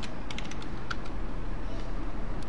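Computer keyboard keys clicking, about half a dozen keystrokes in the first second as a word is typed, then only a steady low hum.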